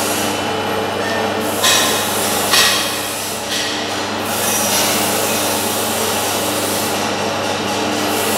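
Banana leaf cutting machine running with a steady motor hum, with a few brief louder rushes of noise between about one and a half and four seconds in as the leaf stack is pressed and cut.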